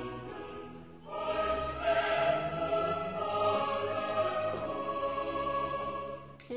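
Choral music with long held voices, swelling louder about a second in.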